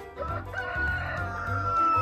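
A rooster crowing once: one long crow whose held final note slides slowly down in pitch.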